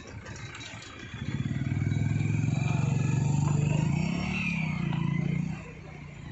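A motor vehicle engine passing close by: it grows louder about a second in, wavers in pitch near the end of its pass, and fades out about five and a half seconds in.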